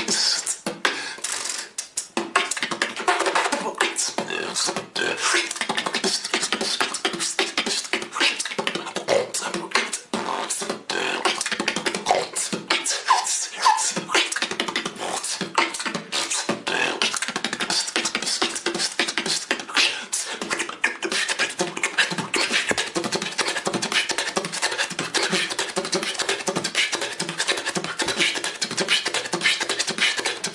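Solo beatboxing: a fast, continuous run of mouth-made percussive hits, with a few brief pitched vocal notes mixed in.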